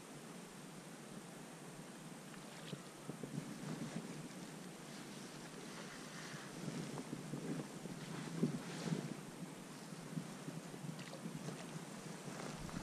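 Gusty wind buffeting the microphone over rippling river water, swelling about three seconds in and loudest a little past the middle, with small irregular rustles.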